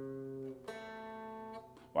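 Finger-picked notes on a semi-hollow electric guitar capoed at the second fret. One note is already ringing, a second is plucked about two-thirds of a second in, and it fades away near the end.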